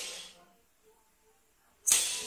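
Crash cymbal on the song's drum track: the tail of one hit dies away in the first half second, then near silence, then a second crash near the end.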